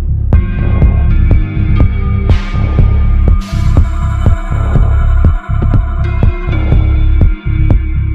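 Minimal techno from a DJ mix: a deep, throbbing bassline under sustained synth tones and short percussive hits, with a swell of hiss building about two and a half seconds in.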